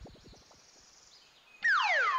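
Near silence for most of the stretch, then, near the end, a loud whistling sound effect that slides steadily downward in pitch: a cartoon falling-tone glide.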